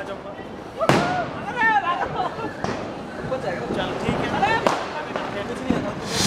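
Excited voices calling out in a street, broken by two sharp firecracker bangs, one about a second in and one near five seconds.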